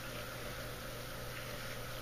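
Steady low background noise of a room with a faint constant hum underneath; no distinct event.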